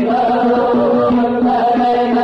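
Aleppan religious nasheed: a male munshid singing a slow, ornamented melody over a steady held low note.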